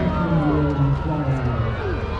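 Steady drone of a small aerobatic propeller plane's engine, fading out about a second and a half in, under people's voices talking.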